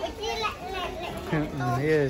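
Voices: a child's high voice, then a man's voice in the second half, with children's chatter around.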